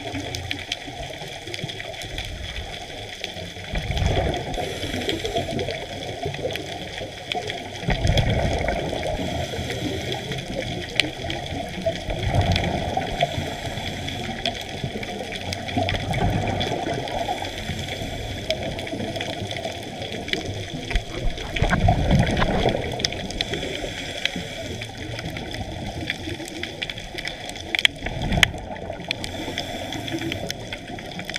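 Scuba diver's breathing underwater: regulator exhaust bubbles come in rumbling bursts about every four seconds over a steady water hiss.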